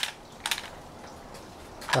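A few faint, sparse clicks from a small object being handled, one sharper click about half a second in, then a voice starting near the end.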